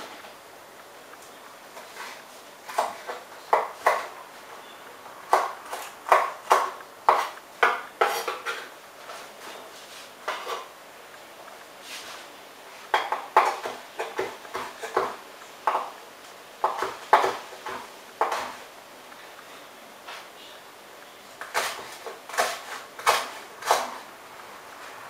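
Kitchen knife chopping vegetables on a wooden cutting board: quick runs of sharp knocks, several strokes at a time, with short pauses between the runs.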